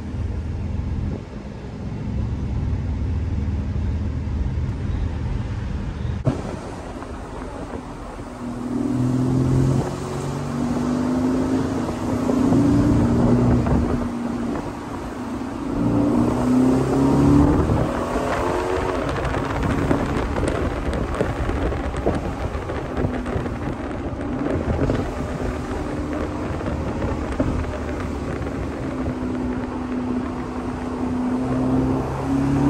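Aston Martin DB11 Volante's twin-turbo V8, heard from inside the open-top cabin with wind rush around it. It runs low and steady at first, then revs climb and drop through several accelerations with gear changes, before it settles to a steady cruise.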